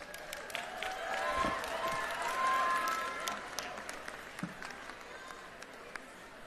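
Audience applauding, with scattered voices from the crowd. The clapping swells about a second in and fades toward the end.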